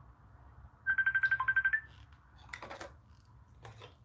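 Phone ringtone from an incoming call: a burst of rapid high beeps, about ten a second, lasting about a second, followed by a few faint clicks.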